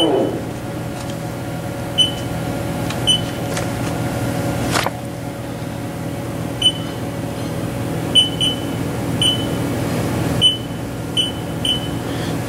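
Haas TL4 CNC lathe running with a steady hum while its spindle is brought up to 250 RPM. Short electronic beeps sound about ten times at uneven intervals, and a single sharp click comes about five seconds in.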